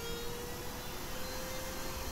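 Palm router with a flush-trim bit running: a quiet, steady whine that rises slightly in pitch.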